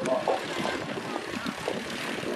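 Ikarus C42 microlight's engine and propeller running as it taxis past close by, with people's voices over it.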